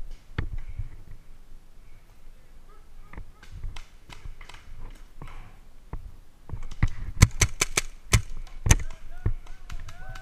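Paintball markers firing during a firefight: scattered single pops, then a quick string of about seven sharp shots some seven seconds in.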